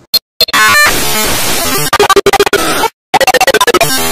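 Loud, chopped-up audio collage of music and sound snippets, cut and looped into rapid machine-gun stutters, with abrupt dead-silent gaps near the start and just before three seconds in.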